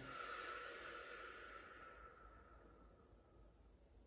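A woman's long, slow exhalation out through pursed lips: a soft breathy hiss with a faint whistle, fading away over about three and a half seconds.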